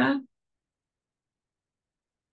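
Silence, after the last syllable of a woman's spoken word dies away in the first moment.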